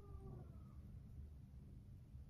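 Near silence: quiet room tone with a low hum, and a faint, slightly falling tone that fades out about half a second in.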